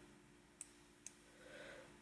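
Near silence broken by two faint, sharp computer mouse clicks about half a second apart.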